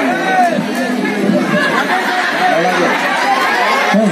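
A man's speech amplified through a microphone and loudspeaker, continuing without pause, with crowd chatter underneath.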